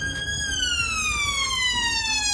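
An emergency vehicle's siren wailing: its pitch peaks about half a second in, then falls slowly and steadily for the rest. A low background rumble runs under it.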